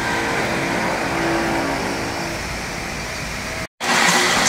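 Steady machinery running, a drone with several held tones that fade after about two and a half seconds. The sound cuts out abruptly for a moment near the end.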